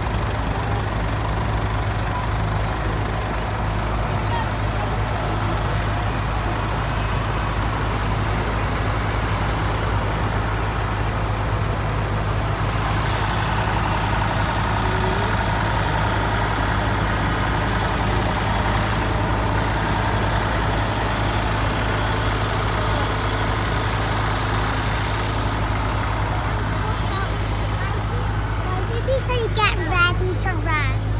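Tractor engines running steadily at low speed, a constant low hum throughout, with the murmur of an outdoor crowd.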